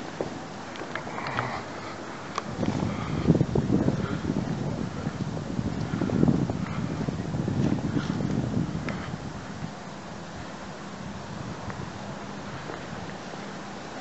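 Wind buffeting a microphone outdoors: a low rumble that comes in gusts from about two and a half seconds in until about nine seconds, then settles back to a steady background hiss. A few faint clicks are mixed in.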